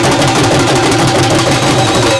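Dhol drums beaten fast and continuously with sticks, a loud, dense rhythm of strokes.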